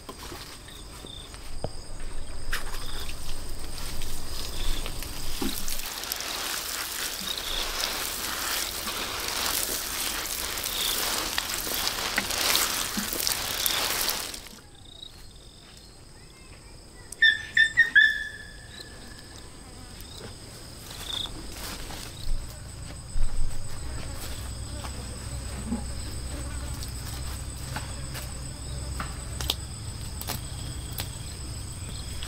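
Insects trill steadily as a high, thin, constant drone. In the first half a rushing noise runs for about twelve seconds and cuts off suddenly, and a few short, sharp sounds follow a few seconds later.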